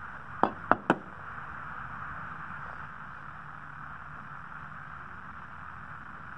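Three quick clicks as a tinted glass sample is set into the slot of a handheld solar spectrum transmission meter, then a steady background hum.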